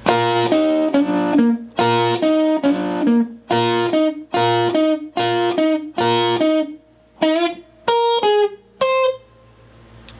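Unaccompanied electric guitar playing a rock and roll double-stop lick: repeated double-stops at the sixth fret of the B and high E strings, then double-stops at the eighth fret of the G and B strings, a hammer-on from the sixth to the seventh fret on the G string, and the eighth fret of the D string. The repeated chords run for the first six seconds or so, then a few single notes follow, spaced out, the last one ringing.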